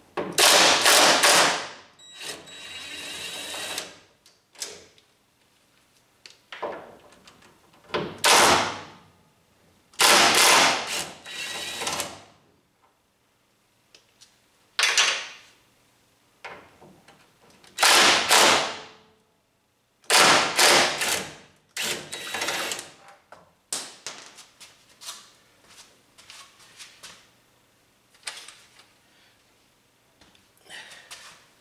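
Cordless impact driver running in repeated bursts of a second or two, undoing the hinge bolts of a car door. Softer clicks and knocks follow in the last few seconds.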